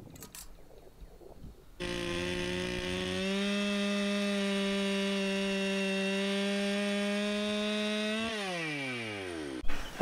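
Gas chainsaw at high revs, crosscutting the end off a hewn log, its pitch holding steady. It starts suddenly about two seconds in, winds down with falling pitch near the end, then cuts off suddenly.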